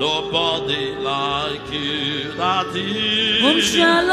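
A gospel praise chorus being sung, voices gliding up and down over steady held notes of musical accompaniment.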